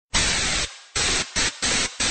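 Bursts of hissing radio static that cut out and come back in, four bursts with short gaps between them.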